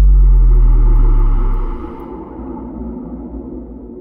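A deep, loud bass boom sound effect, the suspense sting before an elimination result, holding for about a second and a half and then falling away into a quieter low rumble.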